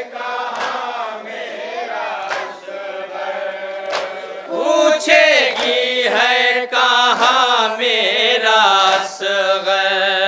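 Men chanting an Urdu noha (mourning lament) over a microphone, a lead voice with a group joining in and growing louder about halfway through. Sharp slaps of hands beating chests (matam) come every second or two.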